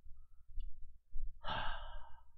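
A man's audible exhale, a breathy sigh close to the microphone about one and a half seconds in, lasting under a second.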